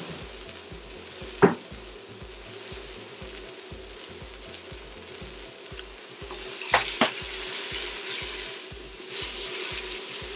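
Diced red onions sizzling steadily in olive oil in a stainless steel pot, with a single sharp knock about a second and a half in. From about six and a half seconds a silicone spatula knocks and scrapes against the pot as the onions are stirred, and the sizzling grows busier.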